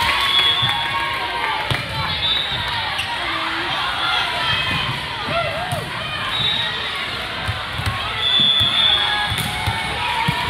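Volleyball gym din: many voices and players calling out across a large, echoing hall, with repeated thuds of volleyballs being hit and bouncing and a few short high squeaks of athletic shoes on the court.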